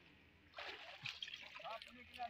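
Faint, distant men's voices over soft scraping and rustling of spades working soil and grass in an earthen irrigation channel.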